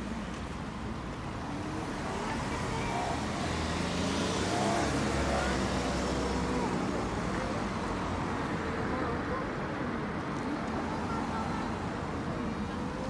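Cars driving past one after another at low speed, with engine and tyre noise. The noise swells as a car passes close about four to six seconds in.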